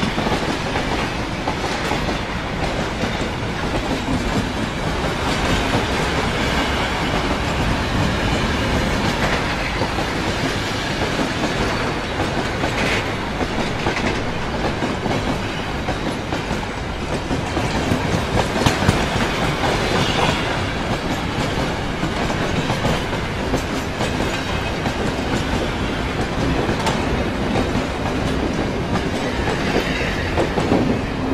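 Continuous rumble and irregular clatter of a moving train.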